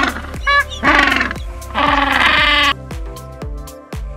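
Penguin calls: three or four calls, the last and longest lasting about a second and stopping nearly three seconds in, over background music with a steady beat.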